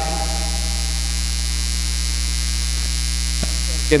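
Steady low electrical hum, like mains hum in the audio feed, unchanging throughout.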